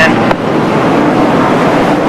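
A field of NASCAR Busch Series stock cars' V8 engines running together in a pack, a steady, dense engine noise as the cars come up to the restart.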